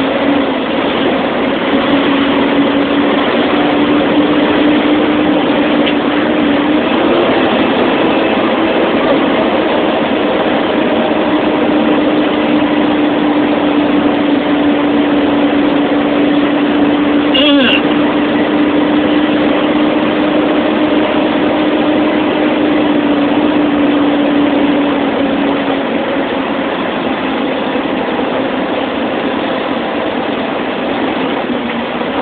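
A big truck's diesel engine runs with a steady drone, heard from inside the cab as the truck creeps along in traffic. The drone fades near the end, and there is one brief sharp sound about two-thirds of the way through.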